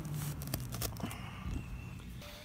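Screwdriver pushed down into lawn soil for a compaction test: a few soft, scattered clicks and rustles of grass blades and soil over a low steady hum, with the blade sinking in with little push.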